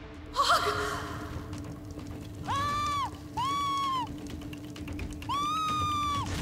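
A person crying out: a sharp wavering shriek near the start, then three drawn-out high-pitched wails, each rising, holding and falling away.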